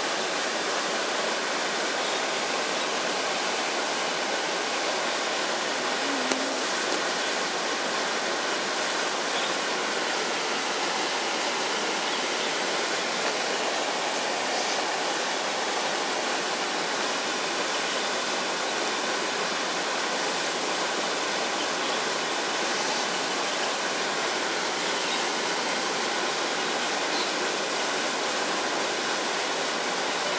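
Steady, even rushing of flowing water, unchanging in level throughout.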